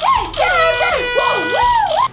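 Loud burst of sports-fan noisemakers: a handheld horn blaring steady tones and a rattle shaking, with a woman whooping in rising and falling glides over them. It all cuts off suddenly at the end.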